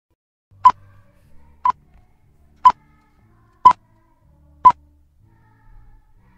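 Five short, sharp ticks, evenly spaced one second apart, like a countdown sound effect added in editing.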